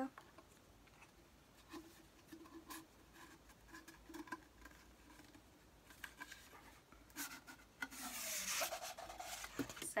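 Paper and card packaging rubbing and rustling as an art print is handled and slid out, with faint scattered clicks and a louder stretch of rustling about eight seconds in.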